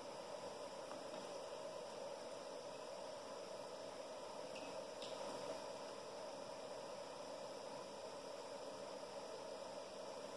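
Low, steady hiss of background room noise with a faint hum, and a faint click about five seconds in as speaker wires are handled. No music is playing yet.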